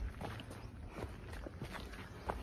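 Footsteps on a dirt and stone hiking trail: a few faint, unevenly spaced steps over a low rumble.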